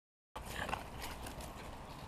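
Sound cuts in suddenly about a third of a second in: soft crunching steps and scuffling on wood-chip mulch, a few sharp crunches near the start, over a low rumble.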